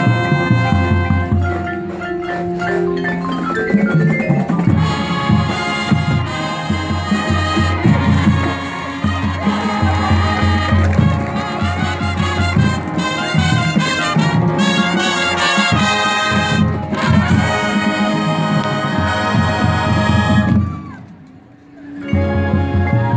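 High school marching band playing, brass horns over drums, with held and moving chords. The music cuts off about a second before the end, leaving a brief pause.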